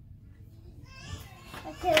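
Speech only: a quiet first second, then voices, a child's among them, with a man starting to speak near the end.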